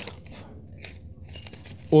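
Plastic sleeve of a perlite grow bag crinkling as it is handled and peeled back from the slab, in a few short faint crackles.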